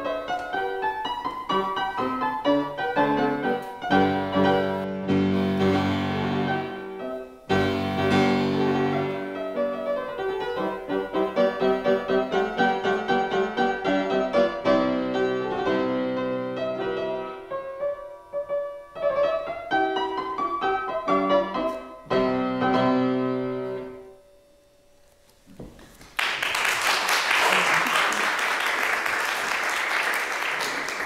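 Fortepiano playing a march in rhythmic chords, ending with a final chord that dies away a little before the last quarter. Audience applause starts about four seconds before the end.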